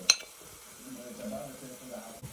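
A metal spoon clinks once against a plate while fermented locust beans (iru) are scraped off it into the pot, with faint frying sizzle under it.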